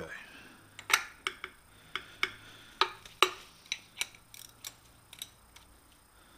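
Sharp metallic clicks and clinks, unevenly spaced at about two a second, as a wrench works the nut on a Victor lathe's change-gear quadrant.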